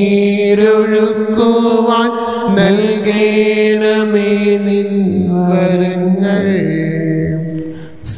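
A Malayalam devotional hymn for the Way of the Cross, sung by one voice in long held notes like a chant. It fades out near the end.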